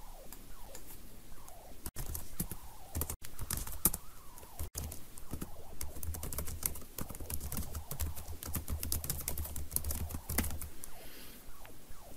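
Typing on a computer keyboard: a quick, uneven run of key clicks as text is entered into a form, with a low hum underneath through most of the middle.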